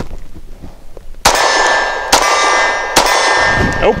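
Three 9mm pistol shots from an HK P30SK, a little under a second apart, each followed by the ringing clang of a steel target being hit. The pistol cycles the uncoated steel-case ammunition without sticking.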